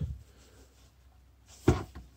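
Near-silent room tone, then about three-quarters of the way in a single short knock, as of hands handling a sheet-metal control housing on a workbench.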